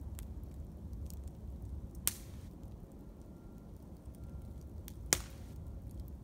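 Small wood campfire crackling with faint ticks, and two sharp pops from the burning wood, about two seconds in and again three seconds later.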